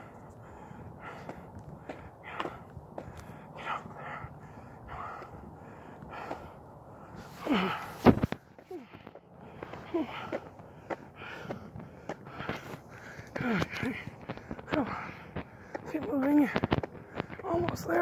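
A man breathing hard, with strained voiced sounds between breaths, and a sharp knock about eight seconds in.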